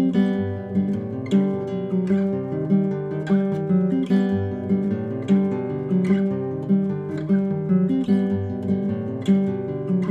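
A solo acoustic guitar plays a song's instrumental introduction: repeating chords over a moving bass line, with a strong strummed accent about once a second.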